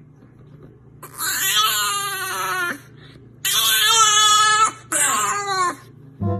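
A dog giving three long, high-pitched wailing cries. The first begins about a second in and lasts nearly two seconds; the other two follow close together in the second half.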